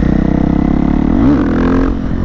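Husqvarna FE 501's single-cylinder four-stroke engine with an FMF full exhaust, running while riding. About a second in there is a quick rev that rises and falls: a wheelie attempt that doesn't bring the front up.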